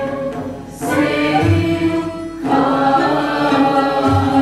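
Classical Turkish music ensemble performing in makam segah: a mixed choir singing together with instrumental accompaniment, with brief breaks between phrases about half a second in and just after two seconds.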